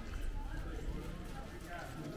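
Footsteps clip-clopping on a cobblestone pavement, with passers-by talking in the background.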